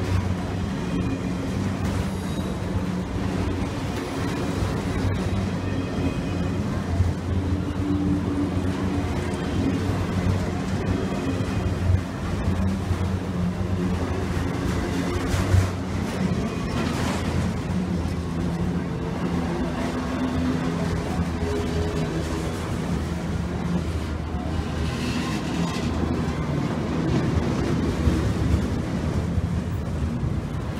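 Freight train of autorack cars rolling past: a steady rumble of steel wheels on rail, with a few sharp clanks along the way.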